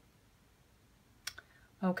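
A quiet pause, then a single sharp click a little past halfway through, followed by a fainter one; a woman's voice starts just before the end.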